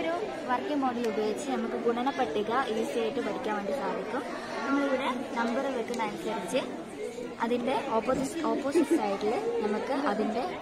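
Speech: voices talking and chattering throughout, with no single clear speaker.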